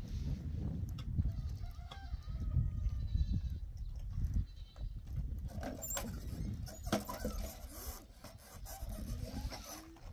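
Several short animal calls, typical of farm livestock, over a steady low rumble.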